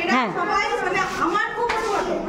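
Several children's voices talking and calling out at once, overlapping chatter.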